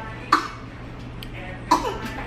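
A person coughing twice, short and sharp, about a second and a half apart, over a low steady hum.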